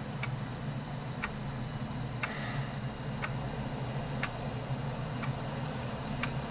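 A regular ticking, one short tick about every second, over a steady low hum.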